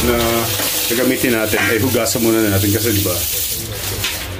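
A woman's voice singing in held, wavering notes over a steady hiss.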